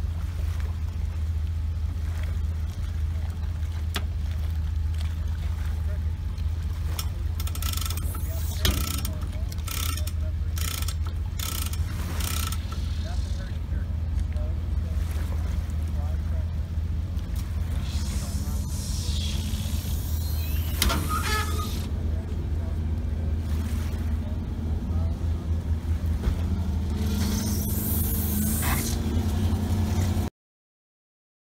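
Boat engine idling low and steady as the deck boat is driven slowly onto its trailer, with a run of sharp knocks about a third of the way in.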